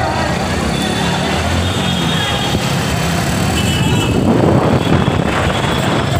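Steady street noise: a low rumble of road traffic with indistinct voices mixed in.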